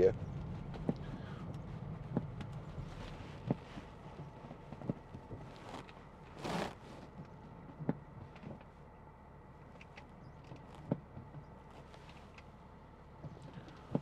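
Cabin road and engine noise of a BMW X5 30d fading as it slows to a stop. Then a quiet cabin with scattered light clicks and one brief whoosh about six and a half seconds in.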